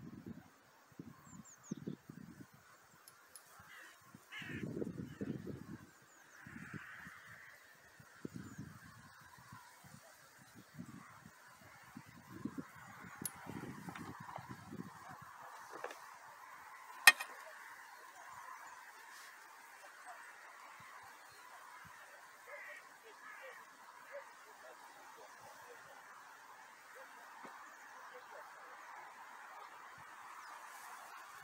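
Geese honking faintly and almost continuously across the water, with a single sharp click about seventeen seconds in and some low thumps in the first half.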